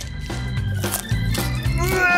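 Background music with a steady low bed, over which raw broccoli crunches sharply a few times as it is bitten and chewed.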